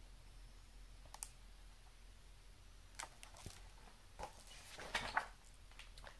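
Faint clicks and rustles of a hardcover picture book being handled and its pages turned, with a closer run of rustling about five seconds in.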